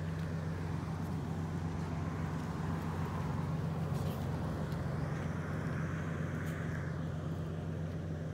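Road traffic noise: a steady low hum of engines, with the hiss of a passing vehicle swelling about five seconds in and fading near seven.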